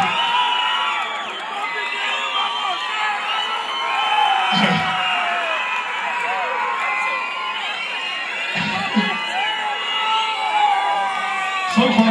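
Large concert crowd cheering, many voices whooping and shouting over one another, with a short low shout from a man about every four seconds.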